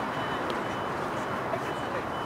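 Steady outdoor background noise with faint distant voices, and a faint short high-pitched beep repeating about twice a second.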